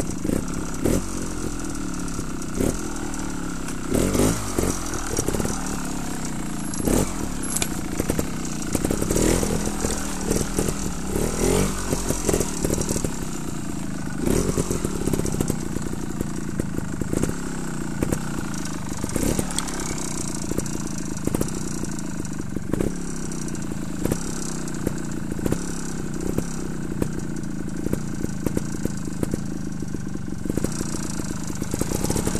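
Trials motorcycle engine idling with repeated throttle blips, the revs rising and falling back every second or two, along with frequent short knocks.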